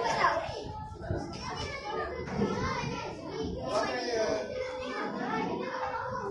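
Many children talking at once in a classroom, a continuous mix of overlapping young voices with no single speaker standing out.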